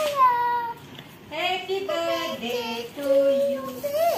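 A young child singing in long, held, wavering notes, with a second, lower voice singing along from about halfway.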